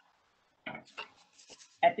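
A spoon scraping against the bottom of a pot, stirring leeks and spices, in a few short, rough strokes after a near-silent start.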